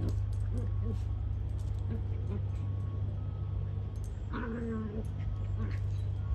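Two small dogs playing, with a brief whining call from one about four seconds in, over a steady low hum. A short laugh is heard at the very start.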